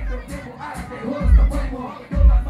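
Live hip hop song played loud through a club PA, with a deep bass beat and ticking hi-hats, and a crowd of voices singing and shouting along.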